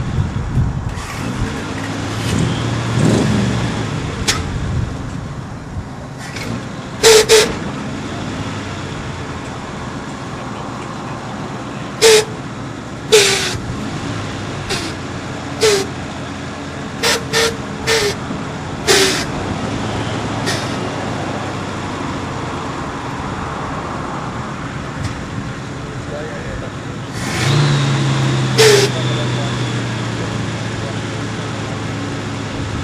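Lowered early-1960s Chevrolet C10 pickup idling, with about ten short air hisses as its air-ride suspension valves fill and dump the bags to raise and lower the truck. The engine revs briefly near the end.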